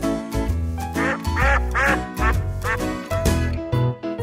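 Cartoon duck quacking several times in the middle of a bouncy children's-song instrumental backing, the mother duck calling her ducklings home.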